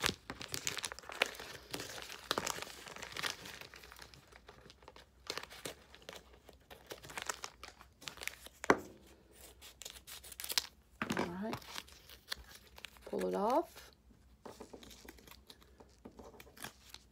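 Crinkling and rustling of contact paper being handled and cut with scissors, with many small clicks in the first few seconds and a sharp tap about nine seconds in.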